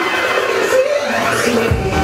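Electronic dance music played loud over a club sound system: a breakdown without bass, filled with a sweeping synth effect, then the bass and beat drop back in near the end.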